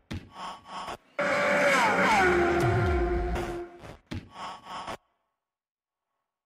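Sound effects for an animated logo intro: a few short whooshes, then a loud swell of about two and a half seconds with tones sliding down in pitch and settling, then more short whooshes that stop about a second before the end.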